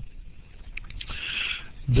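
A pause in a man's spoken lecture: low room noise, a couple of faint clicks, then a soft breath-like hiss just before the speech resumes at the very end.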